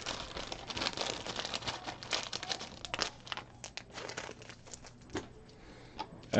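Trading-card packaging crinkling and crackling as it is handled, a rapid run of small crackles that dies away about five seconds in.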